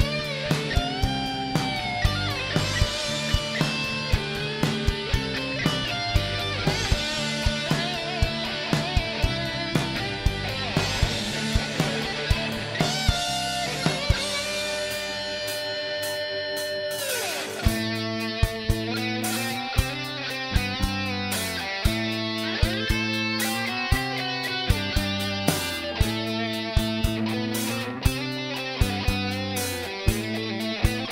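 Live rock band playing an instrumental passage on electric guitars, bass guitar and drums, with a steady drum beat. The guitar line bends notes. About seventeen seconds in, a long held note slides down and the band drops into a steadier repeating chord riff.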